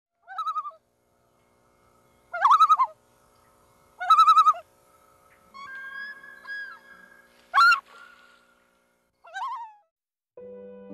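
A bird calling: five short, wavering calls that rise and fall in pitch, the two near the start of the second half the loudest, with a longer held two-note call in the middle.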